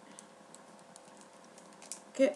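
Faint, irregular light clicks and crinkles of a small packet of post-it notes being handled.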